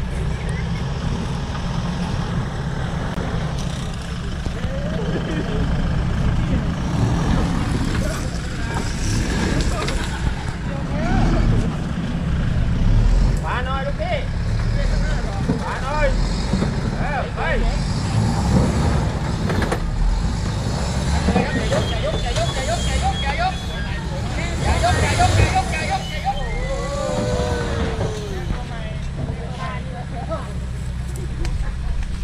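A 4x4 pickup truck's engine running under load as it climbs a rutted dirt slope, swelling louder a few times, about halfway through and again near the end. Onlookers' voices chatter and call out over it.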